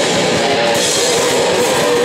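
Death metal band playing live: distorted electric guitar and a drum kit, loud and dense without a break.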